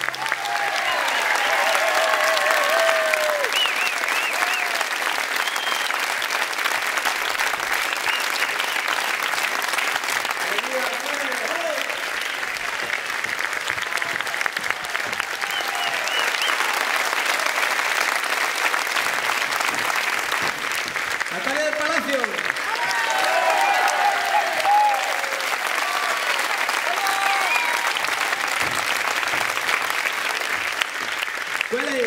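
Audience applauding, with voices calling out and cheering over the clapping.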